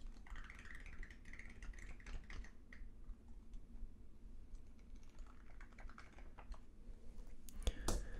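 Glossy pages of a paperback comic book riffled under the thumb: a rapid run of soft flicks, densest in the first three seconds, then quieter handling. A few sharper clicks near the end as the book is handled.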